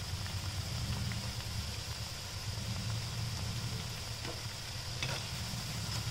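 Shankarpali deep-frying in hot oil in a kadai: the oil bubbles and sizzles steadily while a slotted spoon stirs the pieces, with a couple of faint clicks near the end. A steady low hum runs underneath.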